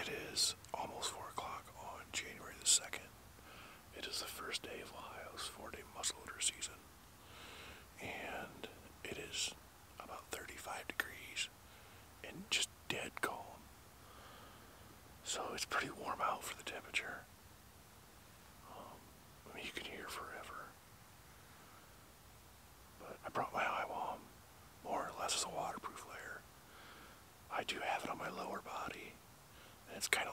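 A man whispering in short phrases with brief pauses.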